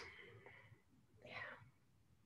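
Near silence, with a single soft, half-whispered "yeah" a little over a second in.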